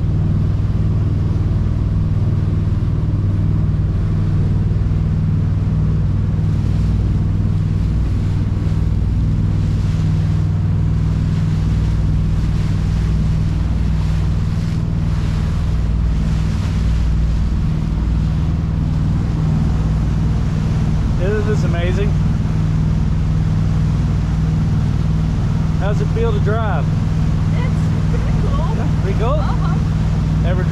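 A motorboat's twin engines running steadily under way, a constant low drone, with wind and water rushing past the hull.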